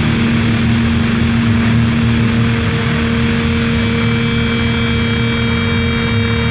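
Heavily distorted electric guitar amplifier droning on a held low note over a thick wash of noise and hum, a feedback-and-noise break in a crust punk song. A thin, higher whine joins about four seconds in.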